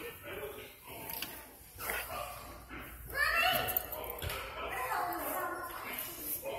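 Voices in a play room, with a young child's high, wavering vocal sound about three seconds in.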